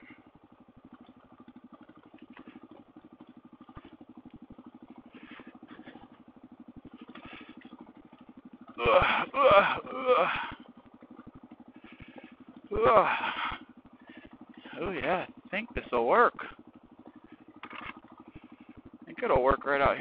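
Suzuki DR-Z400's single-cylinder four-stroke engine running steadily just above idle as the bike rolls along at walking pace. A man's voice breaks in several times over it.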